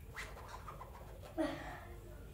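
A pet animal gives one short, low call about one and a half seconds in, over quiet room sound.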